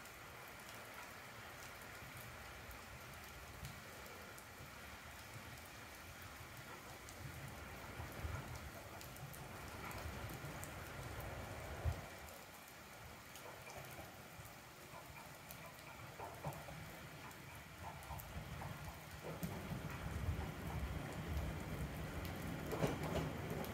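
Steady rain falling, pattering on the platform and its roof. Near the end a low rumble grows as a train approaches the station.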